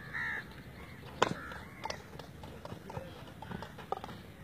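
Field hockey sticks striking a hard ball: one sharp crack a little over a second in, then a run of lighter clicks. A short high call sounds at the very start.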